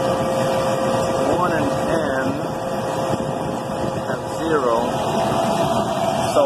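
Steady whir of neighbouring refrigeration condensing units running, with a steady mid-pitched hum through it.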